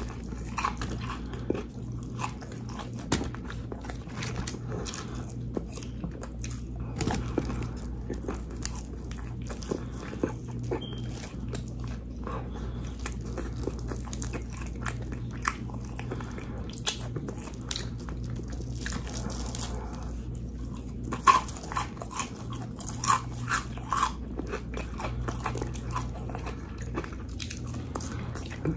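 Close-up chewing and crunching of Popeyes fried chicken, many short crisp crunches and wet mouth smacks, the loudest a cluster about two-thirds of the way in. A steady low hum runs beneath.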